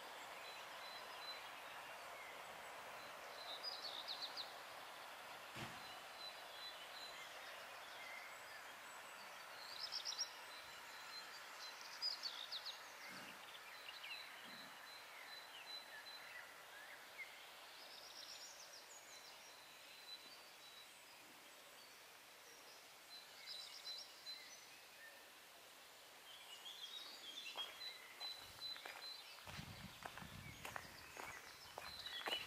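Faint outdoor ambience with distant birdsong: a handful of short chirps and trills scattered through. Near the end come a run of soft footsteps.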